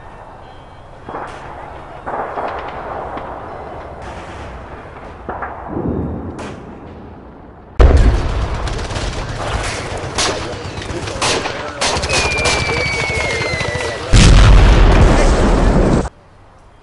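Gunfire sound effects: a sudden volley of rifle shots about halfway through, going on as repeated shots. A falling whistle follows, then a loud explosion near the end that cuts off abruptly. Before the shooting there is quieter noise with a few knocks.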